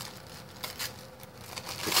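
Tissue paper rustling and crinkling as it is picked up and handled, in a few soft irregular bursts that grow louder near the end.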